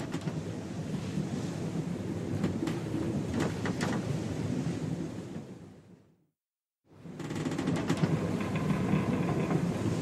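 A noisy storm-and-surf sound bed, like rumbling thunder over breaking waves, that closes one podcast episode and fades out about six seconds in. After about a second of dead silence it starts again as the next episode's opening.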